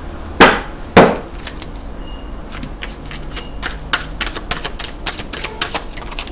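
A tarot deck being shuffled and handled on a table. Two sharp knocks come near the start, then a run of quick, irregular card clicks and slaps.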